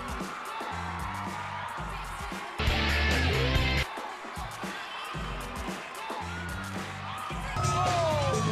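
Backing music for a breakdance battle, with a heavy, regular bass beat. About three seconds in there is a louder burst lasting about a second, and the music gets louder again near the end.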